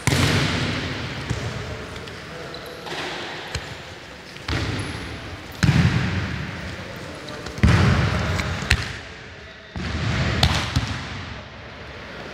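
Wrestlers' bodies slamming onto the mats in throw and takedown drills: about five sudden thuds, each echoing through the large sports hall.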